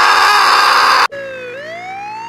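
A loud burst of hissing noise cuts off suddenly about a second in. It gives way to a cartoon emergency siren wailing, dipping briefly and then rising slowly in pitch.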